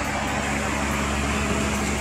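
Steady low mechanical hum, even and unchanging, with a faint held tone underneath.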